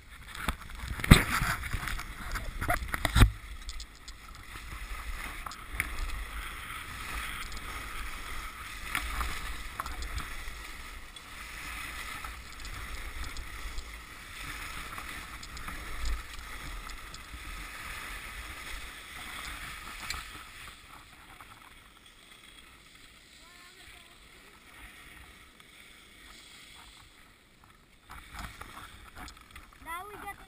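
Skis sliding and scraping over packed snow on a downhill run, with wind on the action-camera microphone. A few hard knocks come in the first three seconds, and the sliding noise falls away to quiet about two-thirds of the way through.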